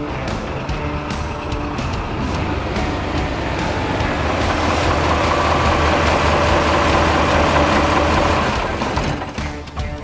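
A heavy truck's engine running under background music, growing louder through the middle and fading away near the end.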